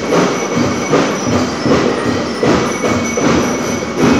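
School marching band playing: a steady drum beat with high, ringing metallic notes sounding above it.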